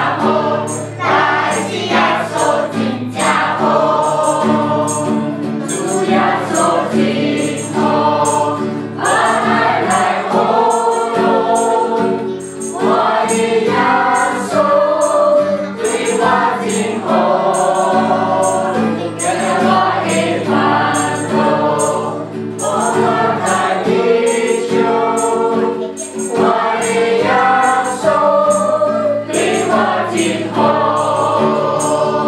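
A mixed group of children and adults singing a Christmas carol together, with sustained low accompaniment and a steady, high-pitched percussive beat.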